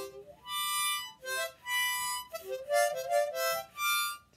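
A small harmonica being played in short phrases of notes, with brief breaks between them; the playing stops at the end.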